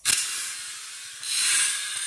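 M1911-style blowback toy pistol cycling: a sharp click as it fires right at the start, fading into a hiss, then a second, longer hiss about a second and a quarter in.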